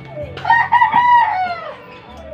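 A rooster crowing once, starting about half a second in. The call lasts just over a second, wavers at first, holds its pitch, then falls away at the end.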